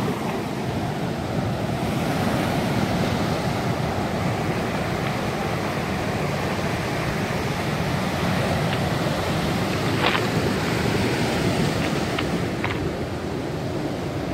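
Ocean surf breaking and washing up over a beach of rounded stones: a steady rush of waves.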